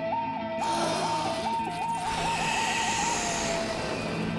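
Cartoon music cue: a single whistle-like tone stepping between two pitches, slowly at first, then faster into a trill, before settling and sliding down near the end, with a soft hiss behind it in the second half.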